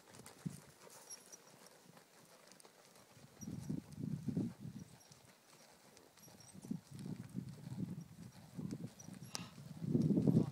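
Faint, muffled hoofbeats of a horse trotting on soft sand, more frequent in the second half.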